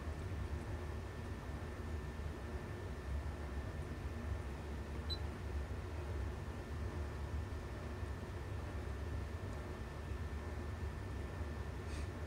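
Steady low electrical hum with a faint, steady high-pitched tone above it. No distinct clicks or other events stand out.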